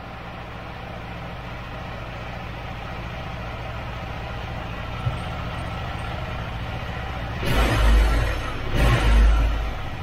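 KTM 390 Adventure's single-cylinder engine idling steadily, with the idle vibration that sets the mirrors and headlight shaking. Near the end come two short, louder surges about a second apart.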